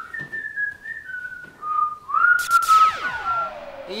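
Whistling of a short tune, a few single notes stepping downward. About two seconds in, a loud sound effect of many tones sweeping steeply down in pitch comes in over the whistling.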